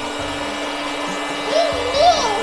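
Electric air pump running steadily with a motor whine while it inflates a children's inflatable pool. A brief voice comes in near the end.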